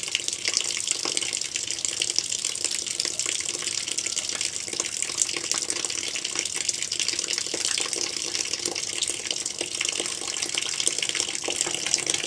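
Steady stream of water running from an opened valve on a mains-pressure solar hot water line, pouring over a thermometer probe. The water is being run off to clear the cooled water from the line before the tank temperature is read.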